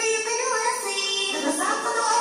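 A children's song: a child's voice singing over instrumental backing music.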